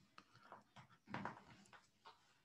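Near silence: faint room tone with a few soft, brief sounds, the clearest one short and faint a little after a second in.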